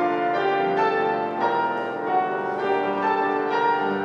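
Carl Rönisch grand piano being played solo: a steady stream of ringing, overlapping notes and chords, new ones sounding about two or three times a second.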